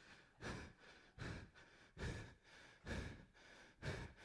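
A man breathing hard into the microphone between phrases: five short, sharp breaths, evenly spaced.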